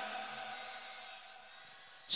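Pause between sung lines: the faint echo of a man's amplified singing voice dies away through the PA and hall, fading to quiet room noise.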